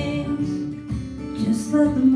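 Acoustic guitar playing an instrumental passage of a song between sung verses.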